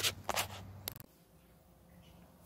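Three short scrapes or clicks in the first second, then quiet room tone once a low hum cuts out about a second in.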